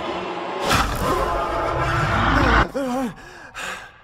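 Horror-trailer sound design: a sudden hit, then a dense swelling noise over a deep rumble that cuts off sharply about two and a half seconds in. A short wavering, gasp-like vocal sound follows and fades.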